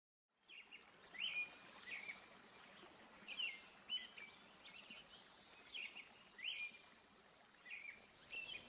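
Faint bird calls: short, high chirps rising in pitch, repeated every second or so.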